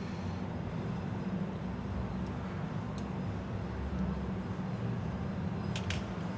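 Steady low hum of background machinery, with a few faint, light clicks of hand tools and metal parts being handled on a workbench.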